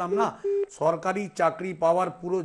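A man talking steadily, with one short, steady telephone-line beep about half a second in.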